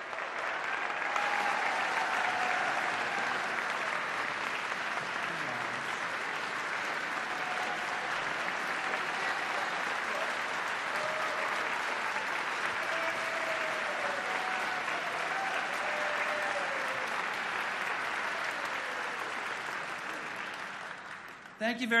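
A large audience applauding in a long, steady round that fades away about a second before the end, with a few faint voices heard through it.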